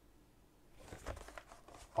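Faint, irregular rustling with a few light clicks, starting just under a second in: an RGB PC fan and its packaging being handled.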